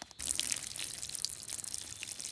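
Cartoon sound effect of a ladybird weeing: a steady trickle of liquid, starting a moment in.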